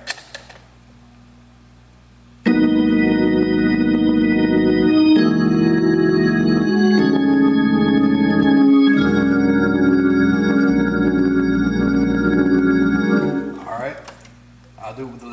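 Hammond organ playing a sequence of four sustained chords with pedal bass, part of a gospel preaching-chord progression in E-flat. The chords enter after about two seconds of quiet, change roughly every two seconds, and release near the end.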